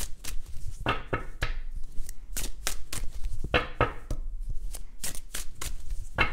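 A deck of tarot cards being shuffled by hand, overhand-style: a quick, irregular run of soft card slaps and flicks, several a second.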